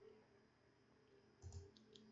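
Near silence: faint room hum, with a few soft clicks about one and a half seconds in.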